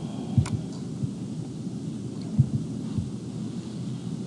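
Steady low background rumble of the room and microphone, with a couple of soft thumps and a sharp click about half a second in.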